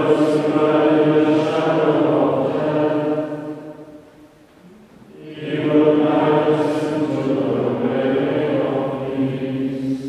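Male choir of Dominican friars singing plainchant, in two phrases with a short breath about halfway through, the voices ringing on in the church's reverberant acoustic.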